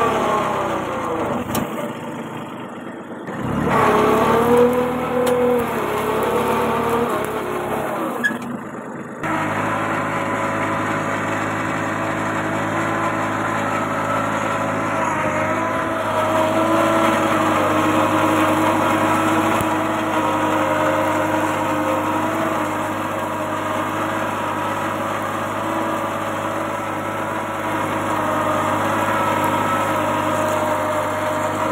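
Kubota 21 hp mini tractor's diesel engine running under load as it pulls an inter-row cultivator through the soil. Its pitch wavers up and down over the first several seconds, then holds steady.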